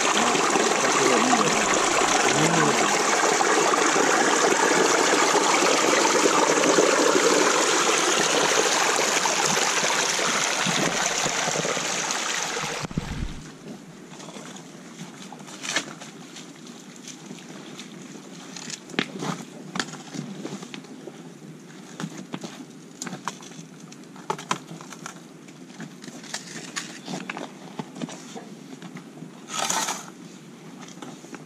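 Water rushing steadily over the expanded-metal riffles of a gold-panning sluice box; about 13 seconds in it cuts off suddenly. Then quieter scraping and crunching of shovels digging into river gravel, with scattered knocks of stones and a louder rattle of gravel near the end.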